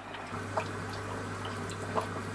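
Aquarium water bubbling and dripping over a steady low hum, with a few faint ticks.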